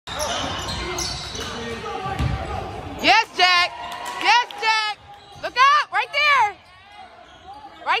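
A basketball bounces on a hardwood gym floor during live play. From about three seconds in there is a run of loud, high-pitched squeals that rise and fall.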